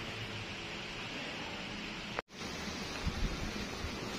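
Steady background hiss of room noise, without speech, broken by a sudden brief dropout a little over two seconds in, where the audio cuts between shots.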